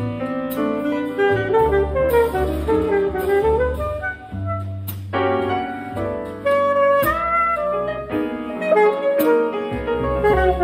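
Jazz quartet playing a ballad: a saxophone carries a bending melodic line over piano chords, walking-free upright bass notes and drums. A brush or stick on the cymbals ticks along lightly, and the saxophone holds a long high note about seven seconds in.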